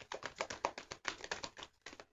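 A deck of tarot cards being shuffled by hand: a rapid, uneven run of crisp card flicks and clicks.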